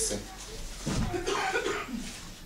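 A person coughing once, about a second in.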